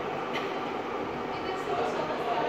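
Steady background hum and hiss of an indoor hall, with faint distant voices in the second half.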